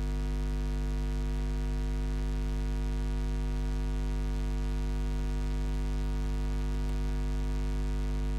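Steady electrical mains hum: a low, unchanging hum with a buzz of many higher overtones above it.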